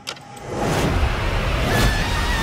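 A cinematic whoosh: a rushing swell with a deep rumble rises about half a second in and holds loud, and a thin high whine joins near the end.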